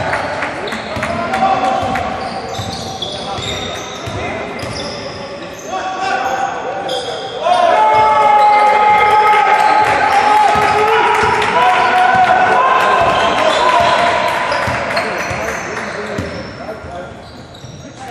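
A basketball being dribbled on a hardwood court in a large, echoing gym, with short squeaks and players' voices shouting. The shouting is loudest from about seven seconds in until about fourteen seconds.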